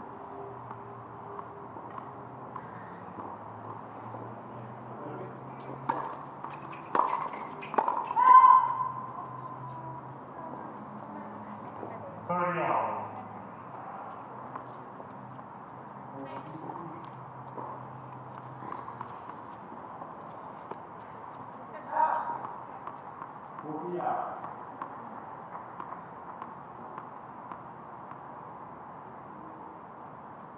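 Tennis balls struck with racquets in a short doubles rally: four sharp hits about a second apart, the last and loudest followed by a brief held tone. A voice calls out a few seconds later, and two softer knocks come near the end, over a steady low background hum.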